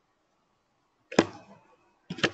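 A single sharp keyboard click about a second in, the Ctrl+C keystroke that stops a running ping, with near silence before it.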